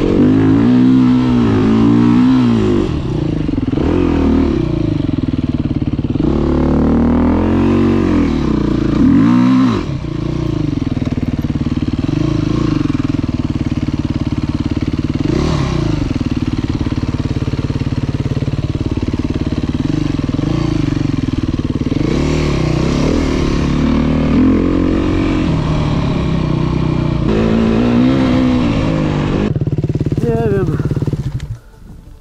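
Enduro dirt bike engine revving hard under load on a sandy hill climb, its pitch rising and falling over and over as the throttle is worked.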